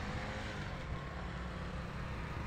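Motorcycles riding on an asphalt road, their engines running steadily with tyre and road noise.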